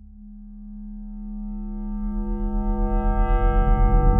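Electronic song intro: a held synthesizer chord swells steadily louder, its upper tones filling in as it grows. A fast pulsing low bass joins about halfway through.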